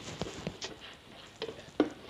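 Bubble wrap being squeezed and popped by hand: irregular small pops and crackles, with one louder pop near the end.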